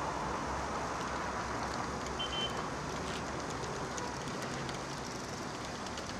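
Steady city road traffic noise, the even wash of passing cars, with a few faint high ticks and one short high tone a little over two seconds in.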